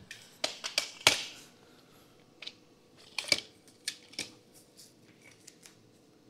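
Telescopic aluminium ladder being unhooked and collapsed section by section: a series of separate metallic clicks and knocks at irregular intervals, the loudest about a second in.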